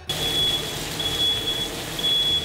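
Smoke alarm sounding in long, high beeps about once a second, set off by the stove where it is taken for a sensitive fire alarm, over meat sizzling as it sears in a pan.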